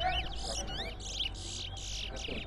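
Caged towa-towa finches singing in competition: quick phrases of high whistled notes that slide rapidly up and down, with fast trills in between.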